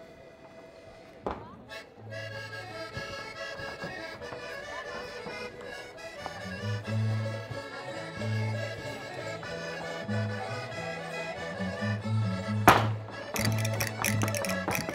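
Portuguese folk dance music from a folk ensemble: a melody on a reed instrument, likely accordion, starts about two seconds in, a low bass line joins a few seconds later, and the tune goes on steadily. Near the end there is one loud thump, followed by quick sharp percussive clicks.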